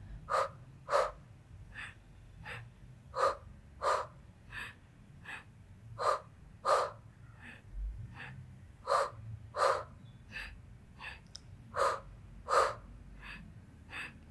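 A woman's audible breathing while exercising: sharp breaths, mostly in pairs about every three seconds, with fainter breaths in between, keeping time with side-lying Pilates leg lifts.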